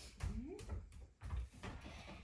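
A faint person's voice making one short rising sound, among a few soft low knocks.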